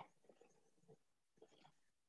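Near silence, with a few faint, brief indistinct sounds at low level.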